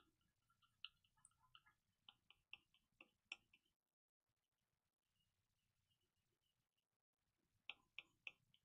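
Near silence with faint ticks of a palette knife working acrylic paint on a palette: about a dozen quick ticks in the first three and a half seconds, then a few more near the end.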